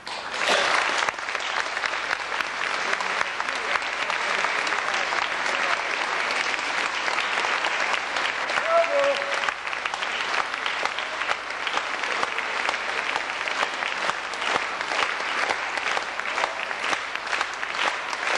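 Audience applauding, a dense, steady clapping that starts as the music ends.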